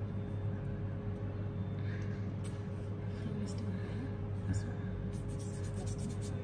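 Steady low hum with a few faint clicks and taps from a small glass perfume bottle being handled.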